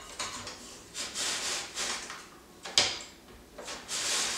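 Zucchini in a plastic hand guard pushed back and forth across a mandoline slicer's julienne blade, shredding it lengthwise. There are about five scraping strokes, just under a second apart, with a sharp click near the end of the third second.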